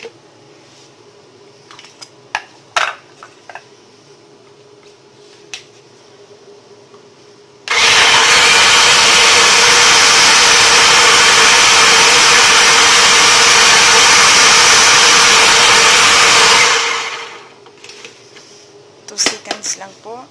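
Countertop blender switched on about eight seconds in, running steadily for about nine seconds as it purées cooked yellow lentil soup, then winding down. Before it starts there are a few light knocks.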